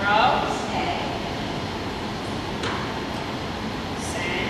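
Steady rumbling ventilation noise of a large indoor hall, with a brief indistinct voice right at the start and a single faint click a little under three seconds in.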